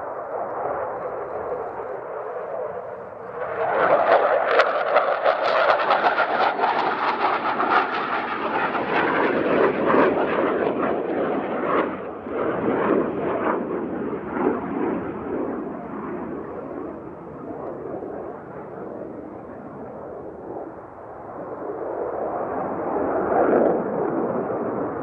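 Jet noise from an F/A-18C Hornet's twin General Electric F404 turbofans in a display pass: it swells suddenly about three and a half seconds in into a loud, crackling roar, eases off after about twelve seconds, and builds again near the end.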